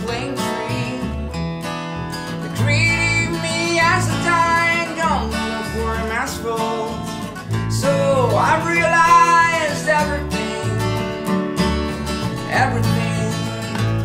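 Live acoustic guitar and plucked upright double bass playing the song's accompaniment, with a voice singing melodic lines that glide up and down over them.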